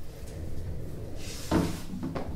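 An office chair pushed in against a table: a short scrape and a thump about a second and a half in, with faint furniture and handling noise around it.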